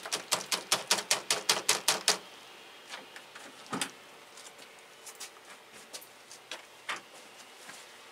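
Hedge cutting: a fast, even run of about sixteen sharp clicks over a faint low hum in the first two seconds, then a few scattered single clicks.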